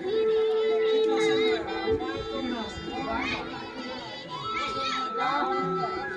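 Crowd of voices, children's among them, talking and calling over music with long held notes.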